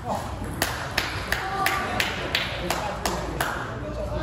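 Table tennis rally: the ball clicking sharply off the rackets and the table, nine quick clicks about three a second, stopping a little before the end.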